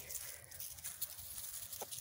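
Faint outdoor ambience with light, scattered rustling and ticking, as over dry leaf litter.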